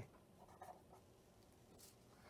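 Faint sound of a pen writing a few short strokes on paper, almost at the level of room tone.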